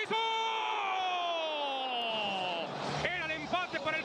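A football commentator's long drawn-out goal shout, one held cry of nearly three seconds that falls slowly in pitch and wavers near its end before he goes back to talking.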